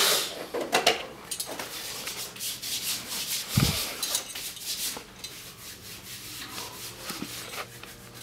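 Rubbing and scraping handling noise from a phone's microphone as the phone is moved about in the hand, irregular and scratchy, with a louder scrape at the start and a dull thump a little past the middle.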